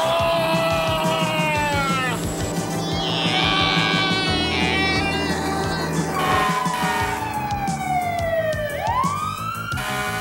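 A siren wailing over upbeat background music. Its pitch slides down slowly and then swings back up near the end.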